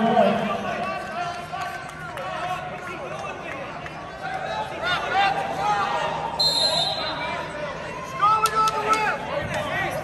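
Scattered shouting from coaches and spectators during a wrestling bout, with a few sharp knocks near the end.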